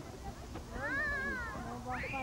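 A child's high-pitched, wordless call that rises and falls over about a second, followed by a shorter rising-and-falling call near the end.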